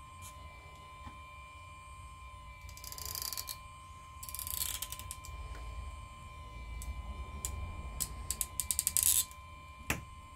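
Clicking and scraping of an iPhone's display assembly being worked against its metal frame, in short bursts, ending in a quick run of sharp clicks near the end.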